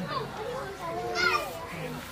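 Children's voices chattering and calling in the background, softer and higher-pitched than the man's amplified preaching around it.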